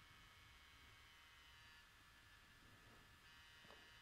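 Near silence: only a faint steady hiss of room tone.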